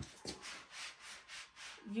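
Suede slippers scuffing and rubbing back and forth on a woven cotton rug in a run of short strokes, several a second, as the feet try to push the rug; it stays put on its double-sided gripper pads.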